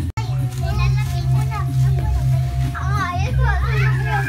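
Young children's voices chattering and calling out together over background music, after a brief dropout near the start.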